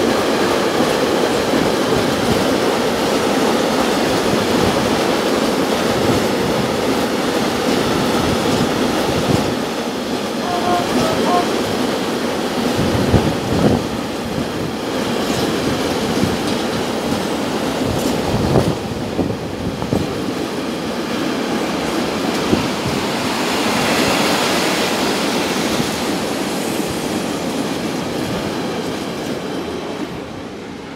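Freight train of tank wagons rolling past, a steady rumble of wheels on rails with occasional sharp knocks. It begins to fade near the end as the last wagons go by.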